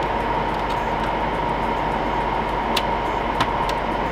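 Steady whir of running cooling fans with a faint high whine through it, and three light clicks in the second half as metal parts of the CPU socket are handled.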